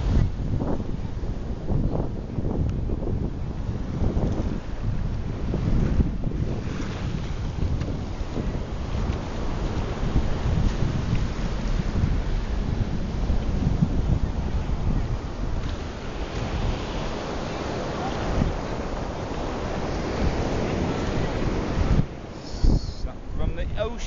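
Wind buffeting the microphone, a steady low rumble, over the wash of small waves breaking on a sandy beach; the hiss of the surf grows a little stronger in the last few seconds.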